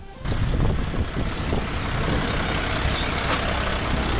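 Steady outdoor rumble of a heavy vehicle such as a truck running nearby, starting abruptly just after the start, with a few faint clicks.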